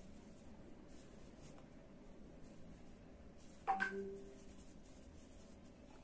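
Faint scratchy handling of a metal crochet hook pulling cotton yarn through stitches, barely above room tone. A little past halfway there is one brief spoken word, part of counting the stitches.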